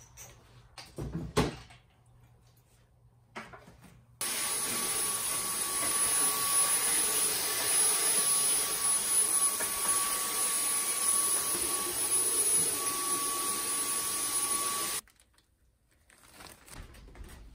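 A small vacuum cleaner running steadily for about ten seconds with a steady whine, switching on and off abruptly. A single knock comes about a second in.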